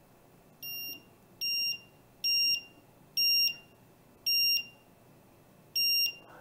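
TickTime cube timer giving six short beeps of the same pitch as its volume is stepped up with the plus button, each of the first few louder than the last, levelling off at its loudest setting.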